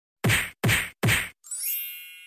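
Editing sound effects: three quick hits in an even rhythm, then a shimmering sparkle chime of many high ringing tones that fades away.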